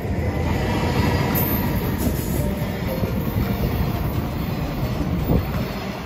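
JR Freight container train passing close by, its wagons' wheels rolling over the rails in a steady loud rumble.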